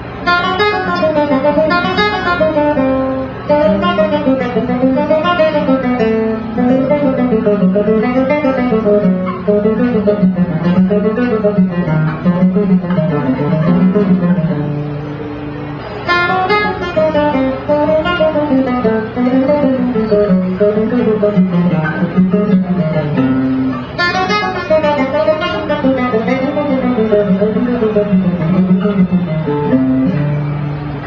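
Guitar playing quick single-note runs on a diminished scale, zigzagging up and down in repeated sequential patterns shifted by minor thirds. The runs come in passages that begin right away, about 16 seconds in and about 24 seconds in, with a few held notes between them.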